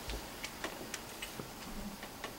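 Several faint, irregularly spaced clicks over quiet room tone, typical of a presenter working a laptop to pause a slideshow.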